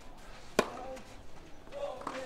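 A tennis racket striking the ball once, a single sharp crack about half a second in, in the middle of a rally.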